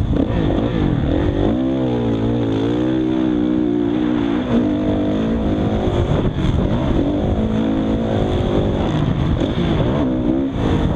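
Drone motors and propellers whining, their pitch rising and falling with the throttle. A steady high tone runs under them.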